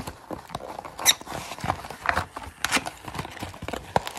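Hands opening a cardboard hanger box of trading cards and pulling out the card packs: irregular rustling, scraping and sharp clicks, the loudest snap about a second in.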